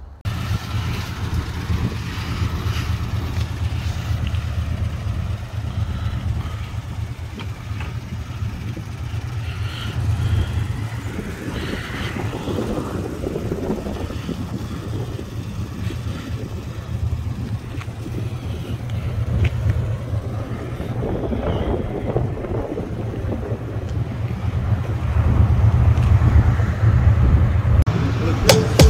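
Steady low rumble of a car engine running, growing a little louder near the end.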